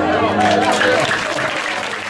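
Audience applauding by hand, with voices over the clapping, gradually fading.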